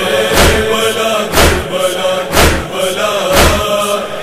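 Urdu nauha, a Shia Muharram lament, chanted by a male reciter in long held notes over a heavy thud that falls about once a second.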